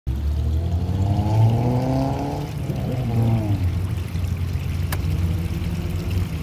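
A steady low engine rumble, with a motor's pitch rising slowly over the first three seconds or so. There is a single sharp click near five seconds in.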